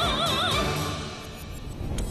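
A woman's sung final note with a wide vibrato, held over a pop-style band accompaniment and ending about half a second in; the band plays on more quietly after it.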